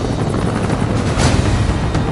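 Trailer score mixed with the fast, low beating of helicopter rotors, with a rushing whoosh about a second in.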